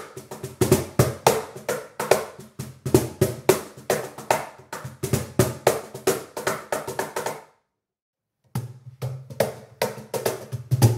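Meinl wooden cajon played by hand in a quick groove of sharp slaps and deep bass tones, recorded unmiked. It stops about seven and a half seconds in, and after a second of silence the playing resumes through front and rear microphones, with a heavier bass.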